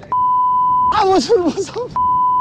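A steady 1 kHz censor bleep sounds twice over the speech: once for most of the first second, and again near the end. A stretch of a man's speech comes through between the two bleeps.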